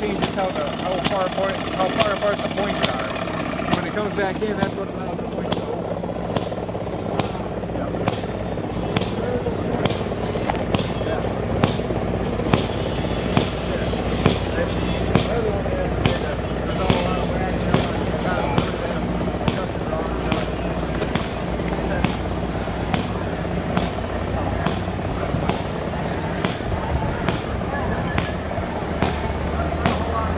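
Fairground background of people talking, over a steady low hum, with sharp pops or clicks about once or twice a second.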